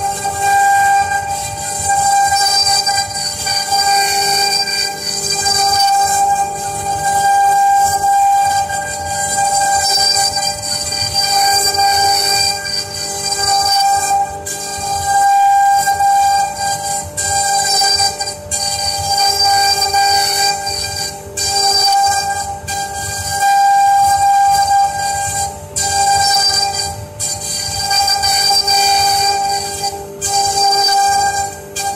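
Both spindles of a double-head CNC router carving into a wooden board at the same time. A steady high-pitched whine, made of several fixed tones, grows louder and softer every second or two as the bits take and ease their cut, over rough cutting noise.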